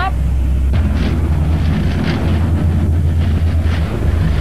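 Sport-fishing boat's engines running hard with a steady low rumble, mixed with rushing, surging water and wind buffeting the microphone, as the boat backs down on a hooked fish.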